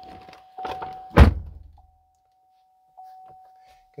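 A pickup's cab door shuts once, with a single heavy thunk about a second in and a short low rumble dying away after it. A few soft rustles come just before it, and a faint steady tone runs in the background.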